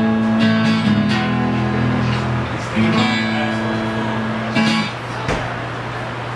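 Acoustic guitar strumming the closing chords of a song: a few strums, the last about four and a half seconds in, left to ring and fade.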